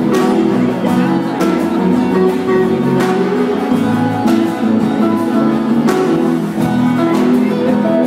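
Live band playing an instrumental passage of a pop-rock song: guitars and bass guitar over a drum kit, with a sharp drum accent about every second and a half.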